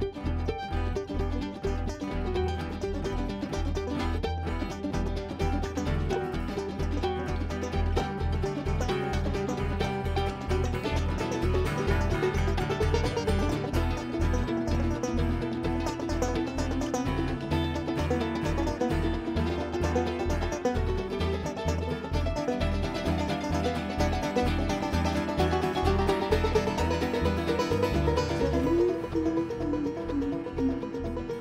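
Live bluegrass string band playing an instrumental jam: mandolin and banjo picking fast runs over a steady, regular low beat.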